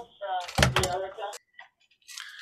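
Landline home telephone ringing in the room, with a sharp knock about half a second in.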